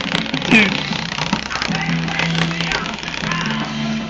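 Electric fan running on its highest setting, with toilet paper flapping in its airflow against the wire guard in quick clicks and flutters.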